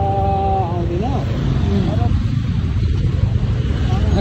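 Steady low rumble of riding through town traffic: vehicle engine and wind noise on the microphone. A voice is heard briefly in the first second.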